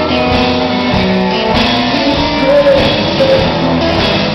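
Rock band playing live and loud, with electric guitars and bass over drums.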